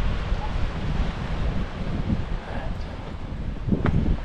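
Wind buffeting a GoPro's microphone: an uneven low rumble that swells and dips, with a short knock near the end.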